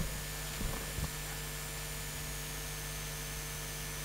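Steady electrical hum with a faint high-pitched whine, broken by two faint short sounds in the first second or so.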